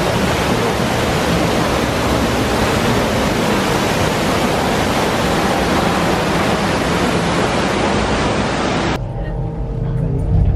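Artificial waterfalls pouring over themed rockwork, a steady loud rush of falling water. It cuts off suddenly about nine seconds in, giving way to a quieter room with a low rumble.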